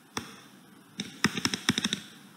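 Light, rapid taps of a stylus tip on a tablet screen while handwriting: a single tap just after the start, then a quick run of about ten taps in the last second.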